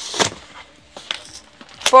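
Cardboard shipping box being opened by hand: a short burst of cardboard flaps scraping and rustling with a sharp crack right at the start, then a faint click about a second in.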